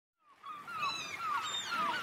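A flock of birds calling: many short falling calls overlap one another. They fade in about a quarter second in.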